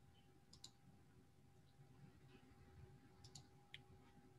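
Near silence with a few faint clicks of a computer mouse: a quick pair about half a second in, another pair a little after three seconds, then a single click.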